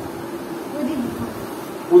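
A person's voice murmuring low and drawn out, without clear words, with a faint steady hum behind it.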